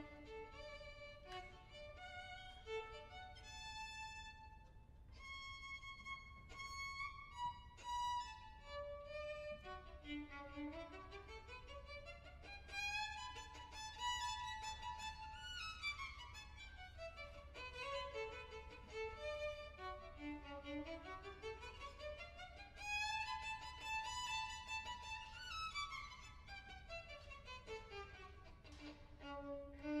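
Solo violin playing a lively dance tune, with quick scale runs that climb and then fall back, twice, through the middle and latter part.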